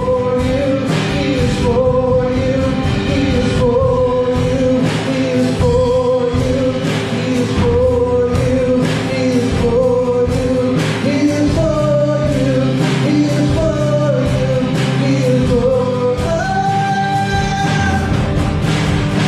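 Live worship song: a man sings lead while strumming an acoustic guitar, with electric guitar and a steady beat behind him. Near the end he holds one long, higher note.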